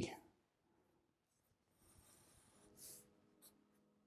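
Faint scratching of a black marker pen drawing short strokes on paper, heard about two seconds in with one brief, sharper scratch near three seconds, then a couple of light ticks. Otherwise near silence.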